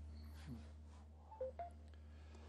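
Faint telephone tones: a few short beeps of different pitches about one and a half seconds in, over a steady low electrical hum.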